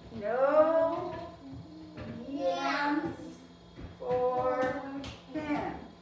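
Young children reading a sentence aloud together in high, drawn-out, sing-song voices, a few words at a time with short pauses between.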